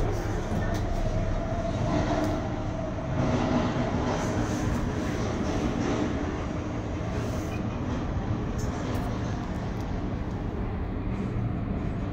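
Steady low rumble and hiss inside an Emirates cable car gondola as it rides along its haul rope.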